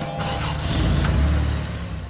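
Cartoon vehicle sound effect: a monster truck's engine running in a noisy rush with a deep rumble, swelling about a second in and then easing off.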